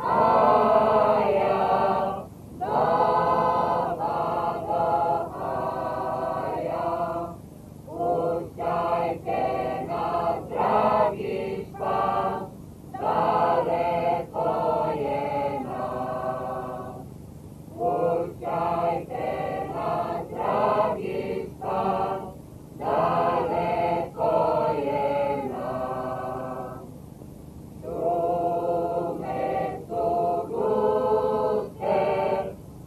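A choir of women's and men's voices singing a folk song, in phrases about five seconds long with brief breaks between them.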